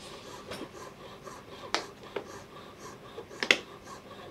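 A few sharp clicks and light taps at uneven intervals, the loudest a close pair near the end.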